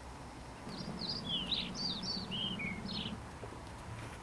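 A bird singing one short phrase of quick, mostly falling chirps, starting about a second in and lasting some two and a half seconds, over a low background rumble.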